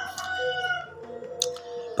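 A rooster crowing: the long drawn-out end of its call, slowly falling in pitch and fading out about a second and a half in.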